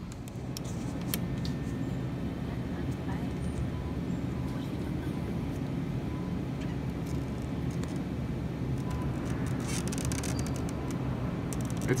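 Steady low rumble of a large store's background noise, with a few faint clicks.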